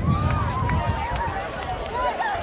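Unintelligible voices of football players and sideline people shouting and calling out across an open field, over a steady low rumble.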